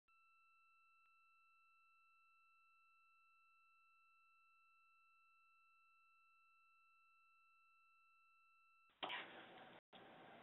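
Near silence holding a faint, steady two-note electronic tone for about nine seconds. The tone cuts off suddenly near the end, and a hiss of open line noise comes in.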